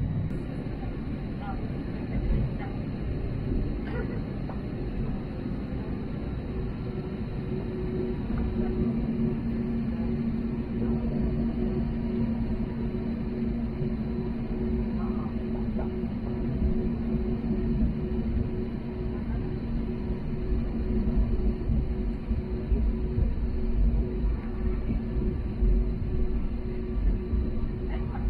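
Inside the cabin of an Airbus A320neo taxiing: a steady low rumble from the Pratt & Whitney PW1100G geared turbofans and the rolling airframe. A steady hum with two tones joins about a third of the way in, and the rumble grows a little louder near the end.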